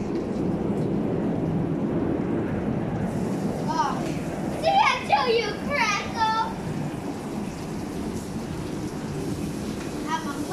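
Raw salmon chunks sizzling in a hot wok, a steady frying noise, with a child's high voice calling out briefly in the middle.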